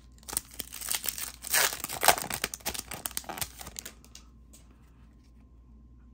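The wrapper of a 2023 Topps Chrome Platinum baseball card pack being torn open and crinkled. The crackling is loudest about two seconds in and dies away after about four seconds.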